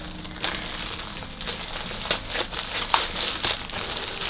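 A plastic clothing package being crinkled and torn open by hand. It makes irregular rustling crinkles, with a few sharper crackles about two and three seconds in.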